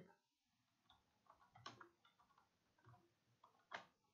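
Faint computer keyboard typing: a scatter of soft, irregular keystrokes, the last one the loudest.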